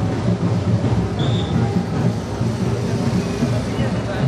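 Dense low rumble of a street procession: deep drums beating under crowd chatter. A brief high tone sounds about a second in.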